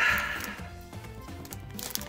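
Quiet background music with steady held notes, over a faint crinkle of a foil booster-pack wrapper being opened by hand.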